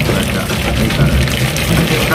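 Truck engine idling with a steady low rumble, heard from inside the cab, under a man's voice.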